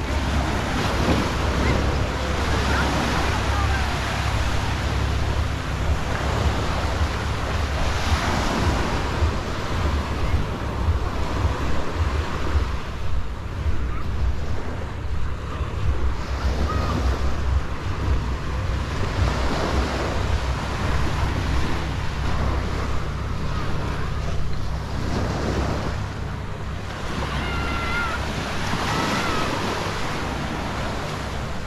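Small surf breaking and washing up on a sandy beach as a steady rushing wash, with wind buffeting the microphone as a constant low rumble underneath.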